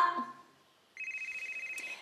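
Telephone ringing: a high electronic trilling ring, a steady tone with a fast flutter, that starts about halfway through.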